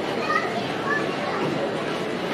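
Crowd chatter of shoppers in a mall concourse, with a young child's high voice calling out briefly in the first second.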